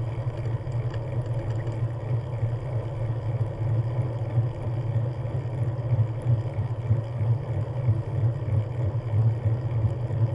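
Steady low rumble of wind on the microphone and tyres rolling on asphalt while riding along at speed.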